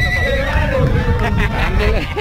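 A horse whinnying near the start, over people's voices.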